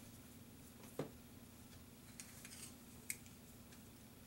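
Faint handling of rubber jewelry molds on a workbench: a soft tap about a second in, a few faint ticks and a small click near three seconds, over a low steady hum.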